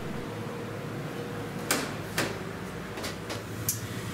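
About five short, sharp knocks and clicks in the second half, from a man climbing through a doorway and up a wooden ladder into a pipe organ's swell chamber, over a low steady hum.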